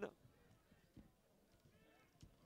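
Near silence from a rugby ground, with a faint, distant short shout just before the end.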